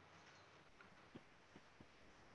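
Near silence: faint room tone with a few soft, brief ticks.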